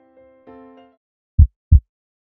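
Soft keyboard music notes fade out, then a heartbeat sound effect begins about a second and a half in: two deep thumps a third of a second apart, a lub-dub.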